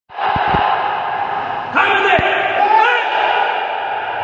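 Loud shouted voices of a karate class at drill, echoing in a large hard-floored hall. A drawn-out shout begins a little before two seconds in, and a few low thuds fall around half a second in and again just after two seconds.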